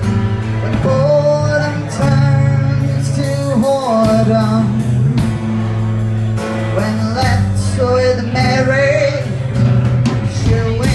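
Small live band playing a song: strummed acoustic guitar, electric bass and drums, with a male voice singing the melody.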